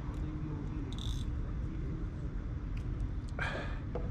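Steady low outdoor rumble with a faint hum in the first second, a brief soft hiss about a second in and a short rustle about three and a half seconds in. The knot being pulled tight on the line makes no clear sound of its own.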